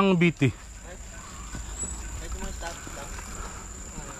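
A man talking briefly at the start, then outdoor ambience: a steady low rumble, a thin steady high-pitched tone and faint distant voices.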